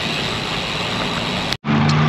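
Steady rush of wind and road noise from a bicycle rolling through an intersection, picked up by a bike-mounted action camera. It cuts off abruptly about one and a half seconds in.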